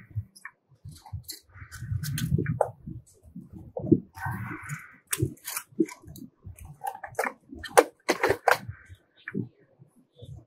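A metal oxygen-breathing-apparatus canister being handled and pushed into its holder on the rebreather: a string of clicks, knocks and scrapes, loudest as it seats near the end, with two short hisses earlier on. Inserting the canister punctures its seal to start the chemical reaction.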